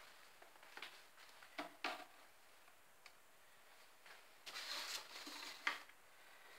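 Faint hand-handling sounds as a thin black cord is picked up and worked by hand: a few soft clicks, then a brief rustle about four and a half seconds in, ending with a sharper click.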